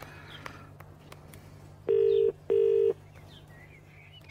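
British telephone ringing tone as heard by the caller, the sign that the line is ringing at the other end: one double ring of two short steady tones about two seconds in. A low steady hum runs underneath.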